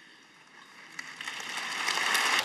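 Large hall audience breaking into warm applause, starting about half a second in and swelling steadily louder.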